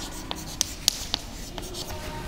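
Chalk writing on a blackboard: about five short, sharp taps and scrapes as a word is written.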